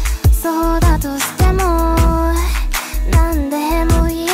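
Japanese pop song cover: a female voice sings a melody over a steady drum beat and bass.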